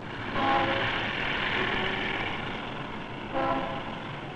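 City street traffic with car horns: a steady rush of traffic, with a horn blast about half a second in and another near the end.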